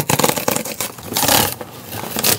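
Corrugated cardboard box's tear strip being ripped open: a continuous rapid crackling rip, loudest about a second in.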